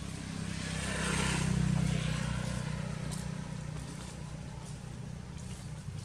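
A motor vehicle passing by: a steady low engine hum that swells to its loudest about one and a half to two seconds in, then fades.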